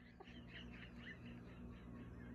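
Faint, high whining from a Blue Heeler (Australian cattle dog), a string of short squeaky whimpers as he complains while waiting to be fed.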